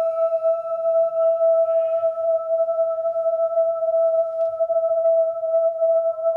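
A single long held tone, steady in pitch with faint higher overtones: a sustained musical note.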